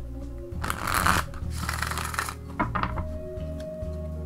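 A deck of cards shuffled by hand, split into two halves and riffled: two short rasping bursts about a second in and around two seconds, then a few light taps as the deck is squared. Soft background music plays throughout.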